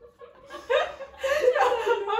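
Women laughing together, starting about half a second in after a brief hush.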